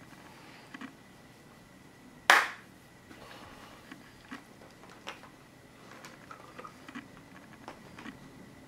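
Quiet small room with a faint steady high-pitched tone and a few faint clicks. One short, loud, noisy burst a little over two seconds in dies away quickly.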